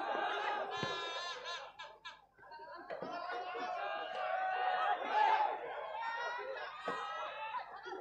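Several people talking and laughing together close to the microphone, voices overlapping.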